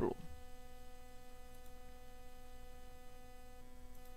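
Faint steady electrical hum with several even overtones, the background noise of the recording during a pause in speech.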